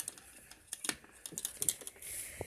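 Small plastic toy figures being handled and set down on a hard countertop: several irregular light clicks and taps.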